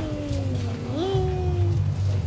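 A young child singing slowly in a high voice: a long note sliding gently down, then a rise about a second in to a second held note.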